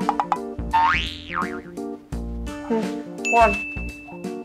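Bouncy background music with a cartoon 'boing' sound effect about a second in, its pitch sweeping up and back down. Near the end a thin, steady high tone comes in over the music.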